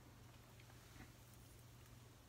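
Near silence: room tone with a steady low hum and a couple of very faint ticks.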